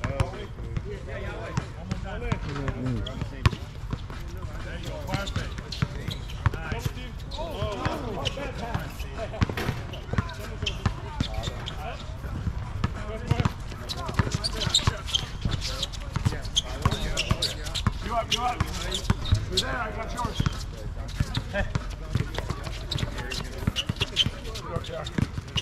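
Basketball bouncing irregularly on an outdoor hard court during a pickup game, mixed with players' footsteps and indistinct voices calling out.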